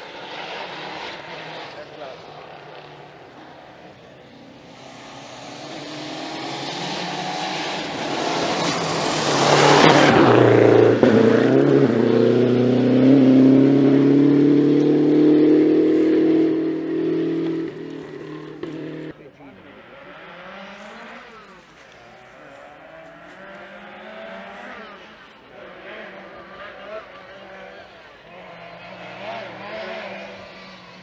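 A historic rally car at full speed on a gravel stage approaches and passes, its engine note dropping sharply as it goes by about ten seconds in, then holding high revs as it pulls away. The engine sound cuts off suddenly just under twenty seconds in.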